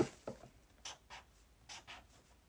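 A pen drawing on paper: a few short, separate strokes, after a knock right at the start.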